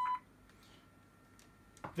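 A steady electronic test tone, with fainter overtones above it, cuts off suddenly about a fifth of a second in. It is followed by quiet with a faint high whine and a few small clicks near the end.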